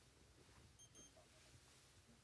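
Near silence: room tone, with two faint, short electronic beeps in quick succession just under a second in.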